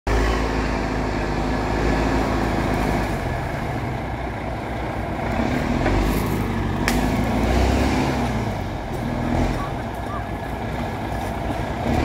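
Diesel engine of a log skidder running and working, its note rising and falling in level. A single sharp click sounds about seven seconds in.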